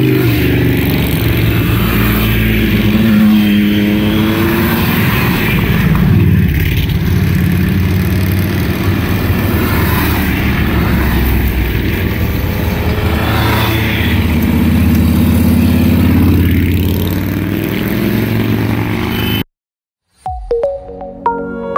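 A stream of motorcycles riding past one after another. Their engine notes swell and fall in pitch as each one goes by. The sound cuts off abruptly just before the end.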